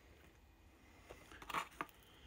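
A few short crinkles and clicks about one and a half seconds in as a foil takeaway tray and the toast are handled; otherwise quiet room tone.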